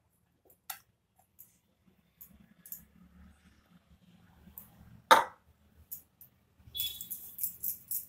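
Faint handling sounds of shaping soft dough by hand, with scattered small clicks. There is one sharp knock about five seconds in and a short clatter of light clicks near the end.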